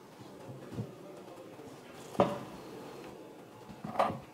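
A kitchen knife cutting through a thin sheet of ground chicken paste and knocking on a wooden cutting board: two sharp knocks, one about two seconds in and one near the end.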